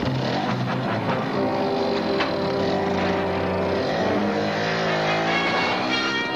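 Background film music over a motorcycle with sidecar, its engine running and revving as it pulls away.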